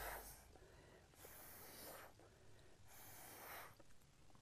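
Three faint puffs of breath blown through a straw onto wet alcohol ink on a canvas, about a second and a half apart, the first the loudest.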